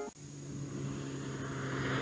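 Steady low engine-like drone of a vehicle sound effect, slowly growing louder, starting right after the preceding promo's music and voice cut off abruptly.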